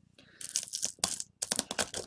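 Stone pestle crushing and grinding cinnamon sticks with dried sage in a rough volcanic-rock molcajete: dry crunching, scraping strokes that start about half a second in, with two brief pauses.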